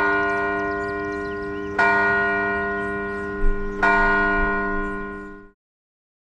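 A church bell struck three times, about two seconds apart, each stroke ringing on into the next and slowly fading; the sound cuts off abruptly about five and a half seconds in.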